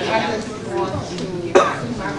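A single short cough about one and a half seconds in, over indistinct voices.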